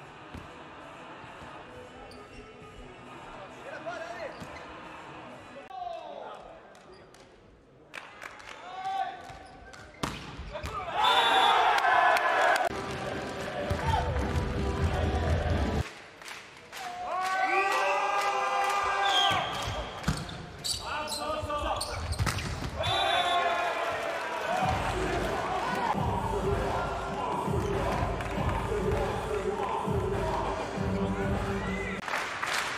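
Volleyball being struck during rallies in an indoor arena: sharp hits of the ball. From about ten seconds in, a loud voice or singing runs over it.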